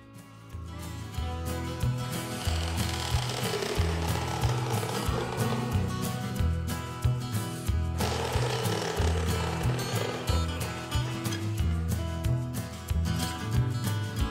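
A cordless jigsaw cuts lengthwise through 3-inch PVC pipe, its blade buzzing through the plastic from about two seconds in until near the end. Background music with a steady bass line plays throughout.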